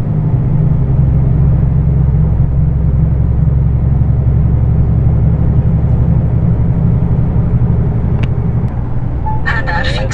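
Heavy truck's engine and tyre noise heard from inside the cab while cruising on the highway: a steady low drone.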